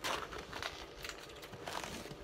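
Faint rustling and crinkling handling noise from a man bending down in a heavy canvas work jacket, with a few soft scattered clicks.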